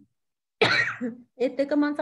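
After half a second of silence, a person coughs once, a short rough burst; about a second later a voice starts, holding a steady pitch.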